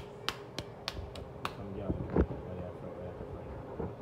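Gas stove burner igniter clicking in quick, even succession, about three clicks a second, as the burner under the oiled frying pan is lit; the clicking stops about one and a half seconds in. A single knock follows a little after two seconds.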